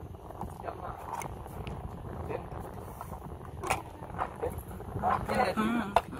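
Wind rumbling on a phone microphone, with faint indistinct voices. Near the end a louder voice close to the microphone makes a sound that wavers in pitch.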